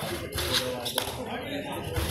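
Kabaddi players' voices and shuffling footwork on the mat in a large hall, with a couple of short sharp taps about half a second and one second in.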